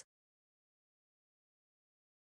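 Silence: the soundtrack is empty, with no room tone.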